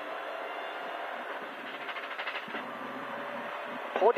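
Race car's engine and drivetrain running under way, heard from inside the stripped, roll-caged cabin as a steady drone, with a short burst of rapid rattling about two seconds in.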